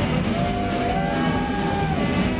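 Psychobilly band playing live: electric guitars, bass guitar and drum kit, with one long high note that slides up and holds for over a second.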